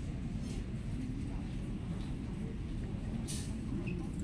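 Steady low rumble of indoor shop ambience with faint background voices, and a brief rustle about three seconds in.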